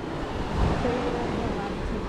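Steady rush of surf with wind on the microphone.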